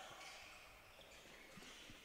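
Near silence: faint sports-hall background from a handball game, with two faint thuds late on.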